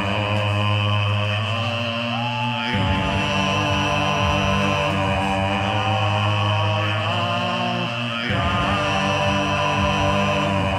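Loopstation beatbox music with no beat: layered, looped vocal drones hold a sustained chord over a deep low hum, the chord shifting about three seconds in and again near the end.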